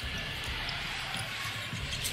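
A basketball being dribbled on a hardwood court, irregular low thuds, over a steady hum of arena background noise.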